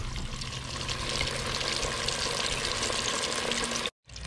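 Dry-battered redfish nuggets deep-frying in oil at about 350 degrees in an electric deep fryer's basket: a steady, dense crackling sizzle. It cuts off abruptly just before the end.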